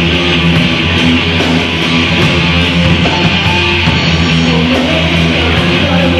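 Heavy metal band playing live: distorted electric guitars and bass, loud and steady.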